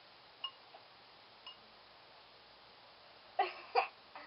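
Two short giggles from a girl near the end, after a few faint ticks over quiet background hiss.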